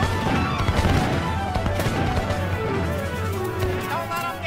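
A volley of musket fire in a cartoon battle: a rapid cluster of shots and crashes in the first second or so, over background music that carries on throughout.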